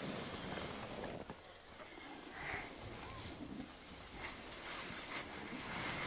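Skis sliding over packed snow: a faint, steady hiss, with a soft click about five seconds in.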